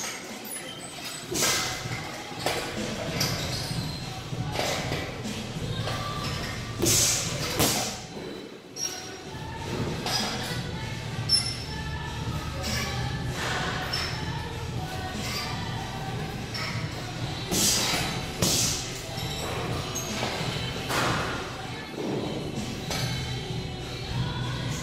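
Boxing-gloved punches landing on a hanging heavy bag: thuds in scattered combinations with pauses between, over background music.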